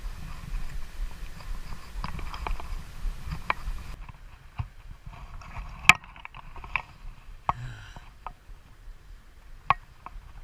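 Handling noise from a fly rod and line being worked by hand: scattered sharp clicks and taps, the loudest about six seconds in. Over the first few seconds there is a low rumble of wind and water on the microphone.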